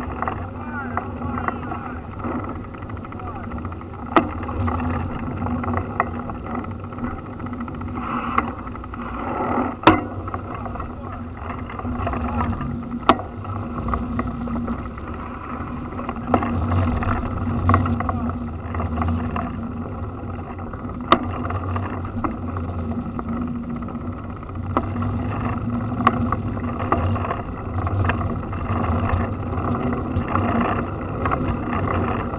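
Rumble and wind noise of travel along a paved road, with a steady low hum and a dozen sharp knocks or rattles scattered through it. Indistinct voices are mixed in.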